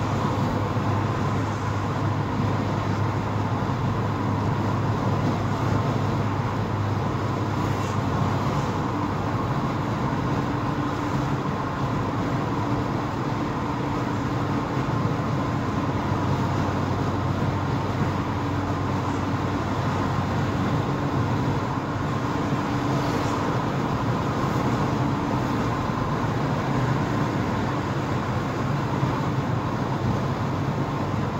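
Steady road and engine noise of a car driving at highway speed, heard from inside the cabin, with a faint steady hum throughout and a second, lower hum joining about ten seconds in.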